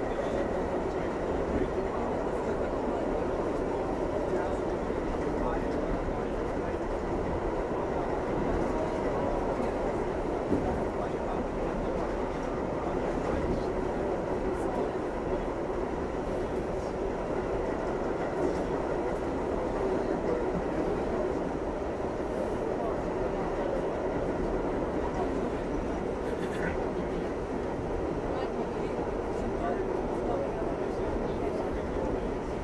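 Steady running rumble and wheel-on-rail noise of an R68A subway car at speed in a tunnel, heard from inside the car.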